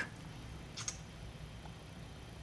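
Quiet room tone with one faint, short click a little under a second in, from a lip gloss tube and its applicator wand being handled.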